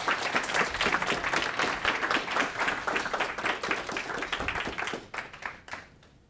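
Audience applauding, the claps thinning to a few scattered ones near the end before stopping.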